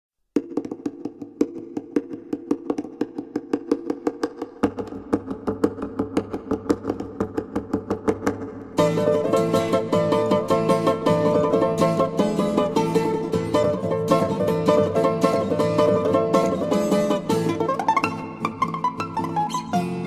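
Balalaika playing a Spanish dance, with evenly repeated plucked notes from the start. A bass line joins about five seconds in, and the music turns fuller and louder with the ensemble from about nine seconds.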